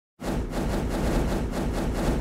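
Logo animation sound effect: a dense, rapidly pulsing swell that starts abruptly after a brief moment of silence and holds steady.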